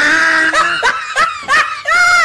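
High-pitched laughter in a quick run of short bursts, about three a second, from a dubbed-in laugh track.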